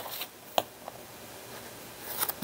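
Scissors snipping through paper and washi tape: one sharp snip about half a second in and a fainter one just after.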